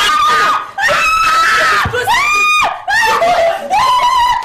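A woman screaming in a string of long, high cries, about four in all, several dropping in pitch as they end.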